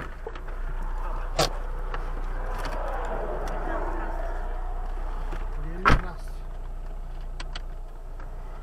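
Inside a stationary car with the engine idling: a steady low hum, broken by two sharp knocks, one about a second and a half in and a louder one about six seconds in.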